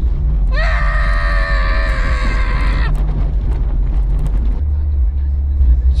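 A long, high-pitched vocal cry held for about two seconds, rising briefly at its start and then steady. Under it runs the constant low rumble of the Jeep XJ driving on a slushy road, heard from inside the cab.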